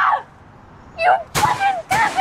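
A young woman crying hard in broken, wailing sobs that start about a second in, with two sharp bangs among them.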